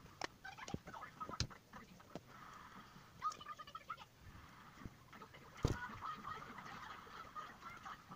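Homemade shampoo-and-salt slime being squeezed and pulled apart between fingers: faint sticky clicks, pops and squelches, with a couple of brief squeaky stretches.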